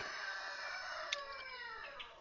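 A rooster crowing faintly: one long call that falls in pitch, with a brief click about a second in.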